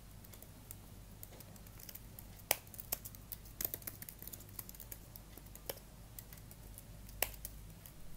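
Typing on a computer keyboard: irregular keystrokes, a few louder clacks among them, over a low steady hum.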